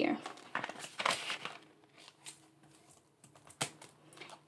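Soft rustling and crinkling of paper bills and clear plastic binder pockets as cash is tucked into an envelope pocket and the page is turned, mostly in the first half, with a few light clicks, the sharpest a little before the end.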